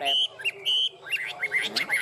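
Caged Chinese hwamei (họa mi) singing: two clear high whistled notes held briefly, then a quick run of about half a dozen short sliding notes near the end.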